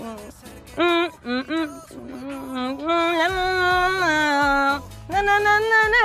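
A recorded song playing with a lead singer: short sung phrases at first, then longer held notes with a bass line coming in about halfway through.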